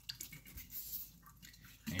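Faint, scattered wet clicks and taps as a kitchen knife is handled and set back onto a water-soaked whetstone.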